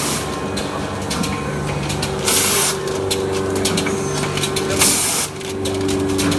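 Rotary pouch packing machine with a volumetric cup filler running: a steady mechanical hum with rapid clicking, broken by two loud bursts of hiss about two and a half seconds apart.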